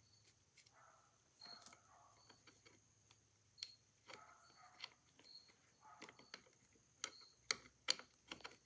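Faint, irregular small metallic clicks and ticks as a screw is turned out by hand from the governor assembly of a Cheney phonograph motor, with a few sharper clicks in the middle and near the end.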